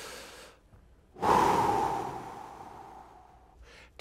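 A man's deliberate deep breath: a faint inhale, then, a little over a second in, a long exhale through the mouth that starts strong and fades away over about two seconds. It is a calming breath to let the tension out before a tee shot.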